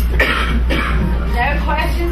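A person coughing near the start, followed by indistinct speech, over a steady low hum.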